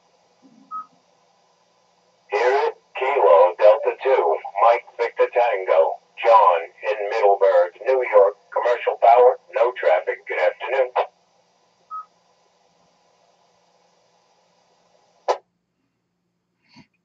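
Amateur radio receiving a net check-in: another station's voice comes over the radio's speaker for about nine seconds, with a steady hum behind it. A short beep comes before the voice and another after it, and a sharp click comes near the end.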